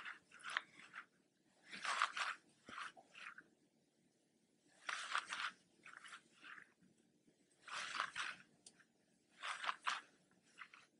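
Faint scraping and rustling of yarn drawn over a Tunisian crochet hook as knit stitches are worked, in short clusters every two to three seconds.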